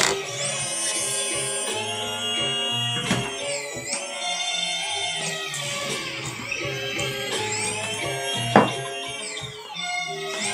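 Background music with plucked-string and synth-like tones and sliding pitches, with a short sharp knock loudest about eight and a half seconds in.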